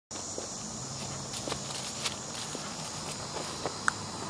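Footsteps of a person walking across grass, a run of faint irregular steps and soft knocks over a steady high hiss. A short chirp sounds near the end.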